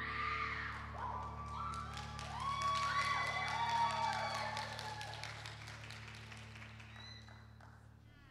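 Audience applauding and cheering with high whoops, dying away over the last few seconds.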